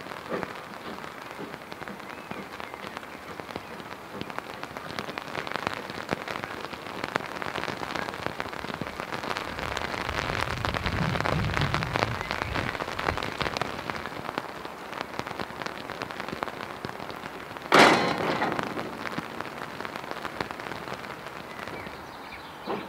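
Rain pattering steadily as a dense crackle of drops. A low rumble swells through the middle, and a single loud crack stands out about two-thirds of the way through.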